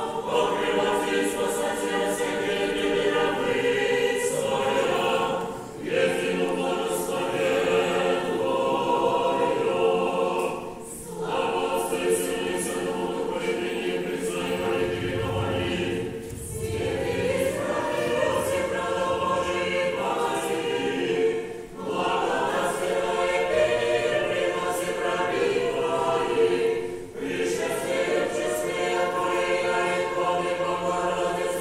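Many voices singing an Orthodox chant of glorification (velichanie) to the Mother of God a cappella, in sung phrases about five seconds long, each ending in a brief pause for breath.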